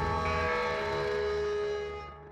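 Background score: a sustained chord of steady tones, held and then fading out near the end.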